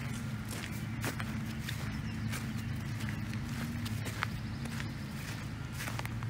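Footsteps crunching on dry straw mulch and dirt, an irregular series of short steps, over a steady low hum.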